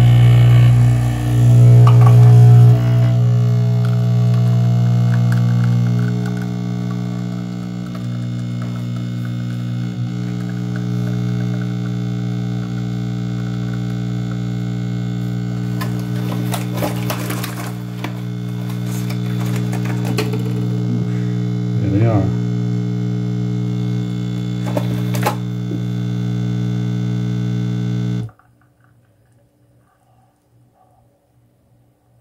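Nespresso capsule machine's pump humming steadily as it brews an espresso shot from an illy Intenso aluminium capsule. The hum is loudest in the first few seconds and cuts off suddenly near the end, when the shot is done.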